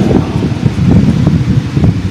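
Low, uneven rumbling noise, like wind buffeting a microphone, with no speech over it.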